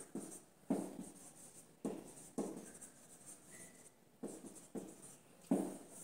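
Marker pen writing on a whiteboard: a run of irregular short strokes.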